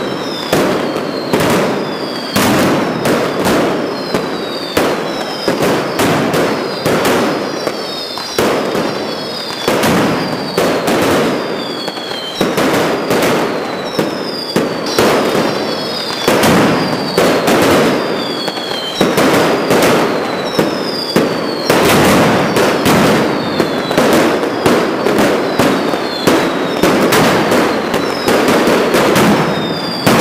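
Manual mascletà: firecrackers lit by hand going off in a rapid, unbroken run of sharp bangs. Short falling whistles sound over them about once a second.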